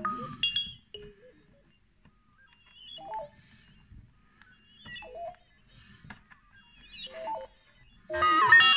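Korg Volca synthesizers playing sparse electronic blips and short chirping tones. Three brief clusters, about two seconds apart, have pitches sliding up and down, over a faint low hum.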